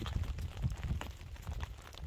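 Rain falling on an umbrella overhead: scattered light ticks over a low rumble of wind on the microphone.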